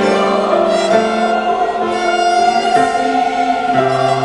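A mixed adult polyphonic church choir sings in several voice parts, holding long sustained notes.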